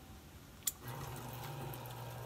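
An electric citrus juicer, with a sharp click and then its motor starting about a second in, running with a steady low hum as an orange half is pressed onto the spinning reamer cone.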